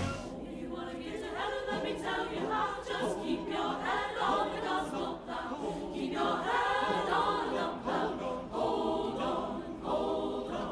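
Mixed choir of men and women singing together.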